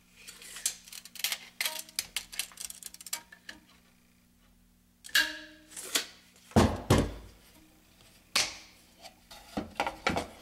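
Rapid clicks, taps and knocks from the NW Spinner bowstring serving tool and its bobbin being handled on the string, the drill not running. The sounds pause briefly in the middle, and a few heavier knocks come later.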